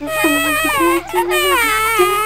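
A high-pitched voice crying out in long, wavering, drawn-out cries over a steady low hum.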